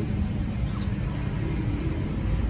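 A steady low rumble of background motor-vehicle noise, with a faint steady hum above it.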